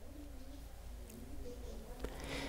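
Faint, low, wavering cooing of a bird during a pause in the talk.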